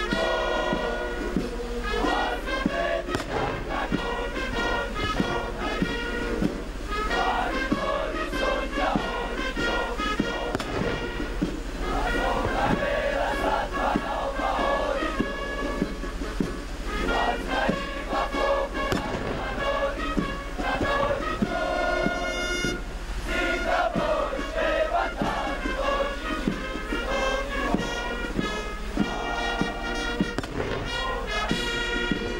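Military brass band playing a tune, with tubas, brass and a steady drum beat.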